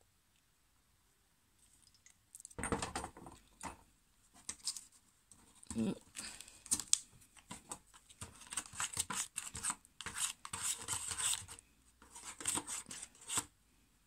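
A small plastic spoon scrapes and stirs powder and water in a plastic candy-kit tray, in quick, irregular strokes that begin a couple of seconds in. The powder mix is being worked into a jelly.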